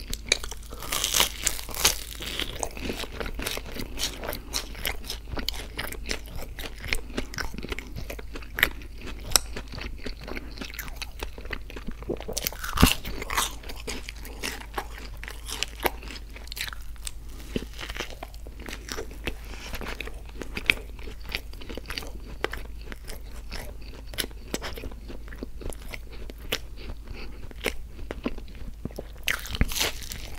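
Close-miked chewing with many irregular crunches as crisp fried breakfast food is bitten and eaten: cinnamon-sugar donut sticks and a hash brown. There is a dense run of crunches in the first couple of seconds and one sharp, loud crunch about 13 seconds in.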